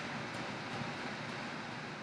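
Steady background hiss and hum with no distinct event: room tone in a pause between speech.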